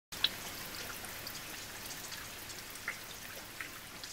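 A steady soft hiss with a few light ticks scattered through it.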